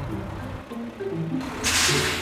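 Background music with held notes that step up and down, then a short burst of hiss near the end.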